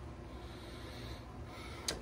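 A man's faint breath through the nose over low room hum, with one short click just before the end.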